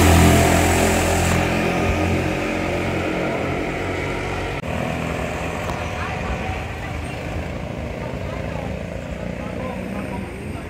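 Go-kart engines running, a steady low drone that slowly fades, with a brief drop about four and a half seconds in.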